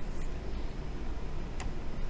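Low, steady room rumble with a faint click near the start and one sharp click about one and a half seconds in.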